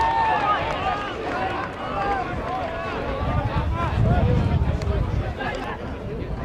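Several voices shouting and cheering after a goal, overlapping and unworded, with wind rumbling on the microphone from about three to five and a half seconds in.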